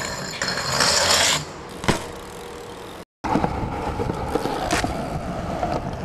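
BMX bike pegs grinding along a concrete ledge: a harsh scrape lasting about a second, then a sharp landing impact about two seconds in. After a sudden break, bike tyres roll on pavement with many small rattling clicks.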